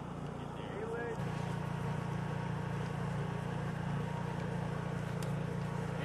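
Portable generator running with a steady engine hum, which gets louder about a second in.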